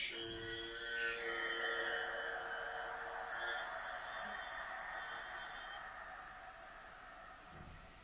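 A bell struck once, ringing with several steady overtones. A brighter, higher ring joins about a second in, and the sound slowly fades away over about seven seconds.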